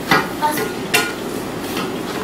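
Cloth rustling and scraping as a shawl is handled and pinned at the side of the head, with two sharp clicks, one just after the start and one about a second in.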